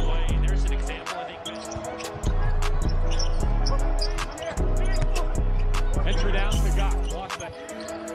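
Hip-hop beat with heavy bass notes that drop out briefly a few times, laid over game sound of a basketball being dribbled on a hardwood court and faint commentary.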